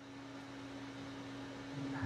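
Quiet room tone in a pause between speech: a steady low hum over a faint hiss.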